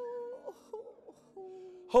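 A person's long, wailing moan held on a steady pitch. A higher note stops about half a second in, and a lower note starts about midway and is held.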